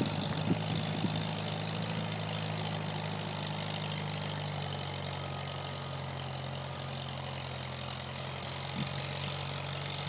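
1947 Farmall H tractor's four-cylinder engine running steadily under load while pulling a plow, with a couple of short sharp sounds in the first second.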